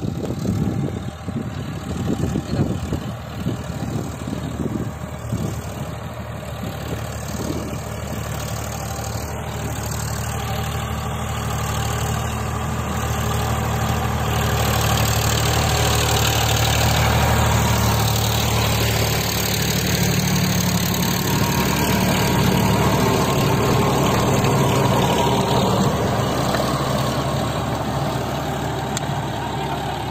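Farm tractor's diesel engine running steadily as it pulls a double-blade rotavator through tilled soil. The sound is uneven and rumbling for the first several seconds, then grows fuller and louder about halfway through as the tractor comes close.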